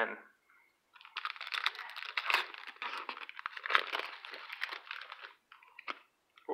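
Foil wrapper of a Parkhurst hockey card pack crinkling as it is handled and torn open, a dense crackle that starts about a second in and stops about five seconds in.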